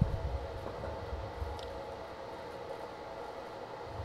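Quiet room noise: a low rumble with a faint steady hum, and a single faint click about a second and a half in.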